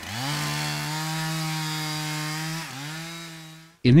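Gasoline chainsaw revving up and running at high speed, with a brief dip in pitch about three seconds in before it steadies again, then fading out.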